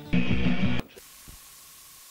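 A burst of music cuts off suddenly under a second in. It gives way to a steady, quiet hiss of VHS tape static with a faint steady tone.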